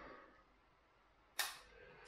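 A single sharp plastic click about one and a half seconds in, as a compact camera is fitted onto a small tripod; otherwise near silence.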